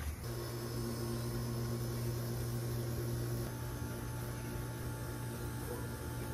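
A steady machine hum with a low tone and several overtones above it, its pitch pattern shifting slightly about halfway through.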